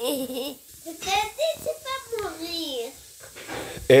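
A young child talking in a high voice, in short phrases whose pitch rises and falls, the words not clear.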